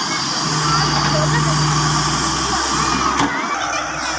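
Hitachi EX100WD wheeled excavator's diesel engine running under load, with its hydraulics working as the boom swings the loaded bucket round; a steady hum holds from about half a second to two seconds in.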